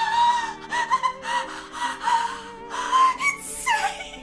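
A woman wailing in long, high-pitched sobbing cries over background music, with a falling cry near the end.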